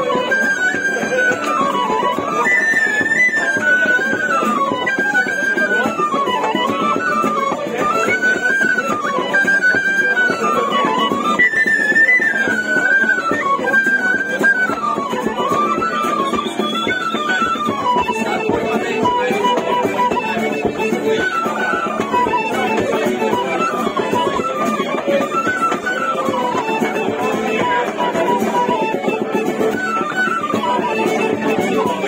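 Fiddle playing a fast Irish traditional dance tune, its melody running up and down in quick phrases, with guitar accompaniment underneath.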